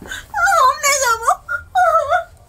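High-pitched wavering whimpering cries, one long one and a shorter one near the end.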